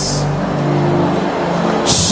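A congregation praying aloud all at once, a steady crowd din, over a soft sustained musical chord.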